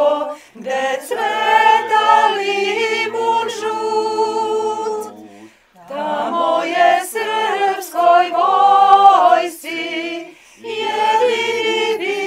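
A small group of women's and men's voices singing together a cappella, in sustained phrases with a short pause about halfway through.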